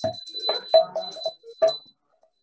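A person's voice in short phrases, chanting or speaking, over a steady high-pitched ringing tone. The sound thins out in the last half second.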